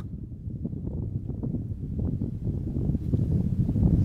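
Wind rumbling on the microphone, with faint scattered crunches of boots on loose stony ground.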